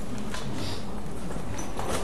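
Scattered light knocks and clicks over steady room noise with a low hum.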